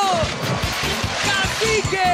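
Upbeat show music with a steady beat. Over it comes a big splash of water as a person plunges into a pool during the first second or so. A long falling tone sounds near the end.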